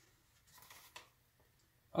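Hands handling the joined EPO foam wing halves: faint rubbing, then a light tap about a second in.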